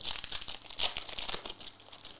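The foil wrapper of a Revolution basketball card pack being torn open by hand, crinkling in a dense crackle that dies away near the end.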